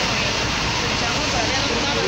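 Steady rushing noise of a flooded city street, with water moving and vehicles driving through it, and faint voices in the background.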